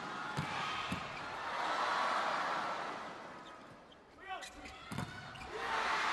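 Arena crowd noise swelling and fading, with the sharp thuds of a volleyball being struck: two about half a second apart near the start and another about five seconds in. The crowd noise rises again near the end.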